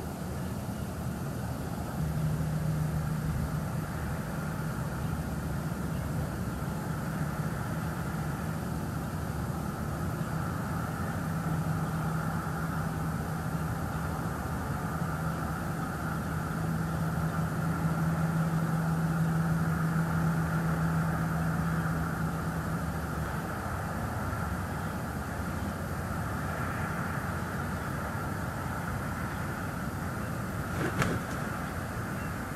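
An engine running steadily, giving a constant low hum that starts about two seconds in and stops a few seconds before the end, over a steady outdoor background hiss.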